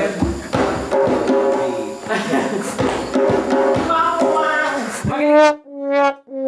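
Djembe played with the hands in a quick, uneven run of strikes, with a voice over it. About five seconds in it cuts off, and a held brass-like note takes over.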